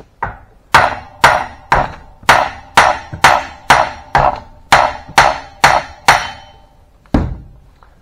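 About thirteen steady metal-on-metal hammer blows, roughly two a second, each with a short ring, driving a hydraulic cylinder's rod outward so the piston knocks against the head gland to drive it out. One duller, heavier thud follows near the end.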